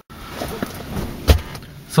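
Irregular knocks and rustling inside a car cabin, with one sharp thump a little past a second in.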